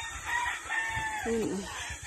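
A rooster crowing once: a held call of about a second that sags in pitch at its end.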